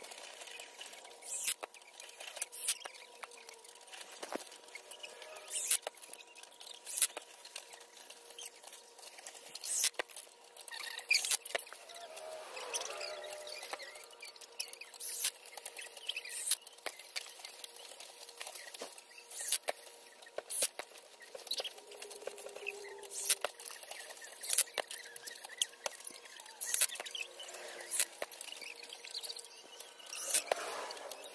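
Scattered sharp clicks and rustling from work on a metal patio sofa frame: nylon webbing straps being pulled tight and a cordless drill being handled as the straps are screwed back in place.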